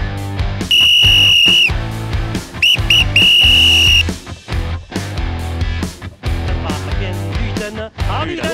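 A high-pitched whistle blown in a pattern: one blast of about a second, two short pips, then another blast of about a second. Rock music with a steady beat plays underneath.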